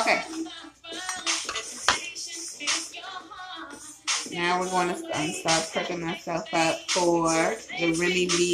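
Clinks and knocks of glassware and kitchen utensils, thickest in the first half, over background music. A singing voice in the music comes up strongly from about halfway.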